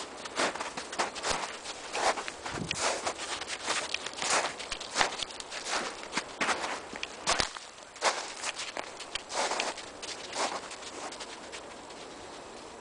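Footsteps in snow, a person walking at an uneven pace; the steps thin out and grow quieter near the end.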